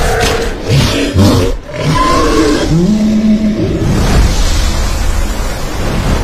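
Loud roaring of a giant monster, a film creature sound effect in several bellowing strokes, over water splashing.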